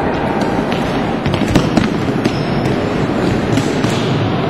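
Floorball game in a sports hall: a run of sharp clacks from sticks and the plastic ball, the loudest about a second and a half in, over a steady din of the hall.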